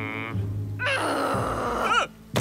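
Cartoon background music, with a short grunt at the start and a louder sound effect entering about a second in.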